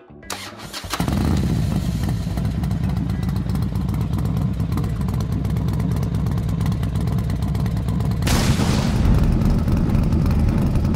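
Motorcycle engine sound effect: a few clicks as it starts, then a steady low running note that grows louder and harsher about eight seconds in.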